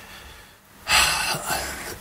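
A man sighing: one breath of air through the mouth, starting just under a second in and tailing off.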